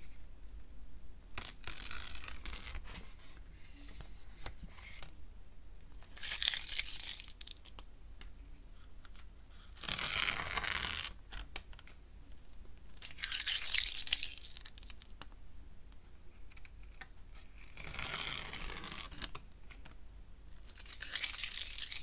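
Orange masking tape being peeled off the edges of watercolour paper in about six separate pulls. Each pull is a drawn-out rip lasting a second or so.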